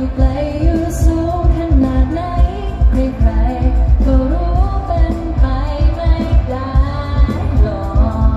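Live Asian pop song played through a concert PA: singers carrying a melody over a heavy, regular beat, heard from within the crowd.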